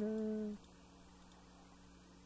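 A man's drawn-out hesitation sound, an "uhh" or "hmm" falling in pitch and then held, ending about half a second in; after it, near silence with faint room tone.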